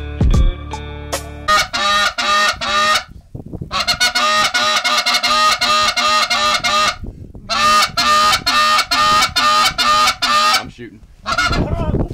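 Canada geese honking: rapid repeated honks, about three a second, in three runs with short breaks between them. A background music track plays in the first second and a half.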